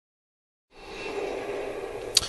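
Dead silence for a moment as the recording begins, then steady room noise with a faint hum and nothing else.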